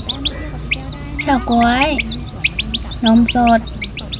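Silkie chickens peeping with many short, high chirps in quick succession.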